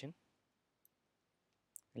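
Near silence broken by a single faint click of a computer mouse a little under a second in, as the Run As > Java Application menu item is selected.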